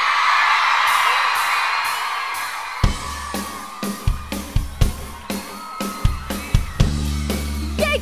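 Studio audience cheering and whooping, fading away as a pop song's band intro starts about three seconds in with sharp drum hits and a low bass line.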